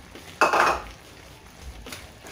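A brief clatter of cookware and utensils at the cooking pot, lasting under half a second, about half a second in.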